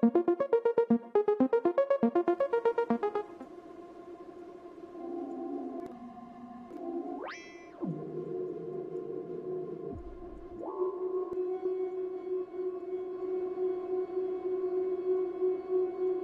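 A resampled synth arpeggio played through the Holy Pads effect rack. Quick plucked notes for about three seconds turn into a sustained atmospheric pad whose tone shifts, with a sharp rising pitch sweep near the middle and a steady held chord in the second half.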